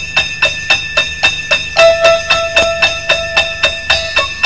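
Instrumental Christmas music: sleigh bells shaken in a steady beat, about three to four shakes a second, over a held high tone, with a simple melody line coming in about two seconds in.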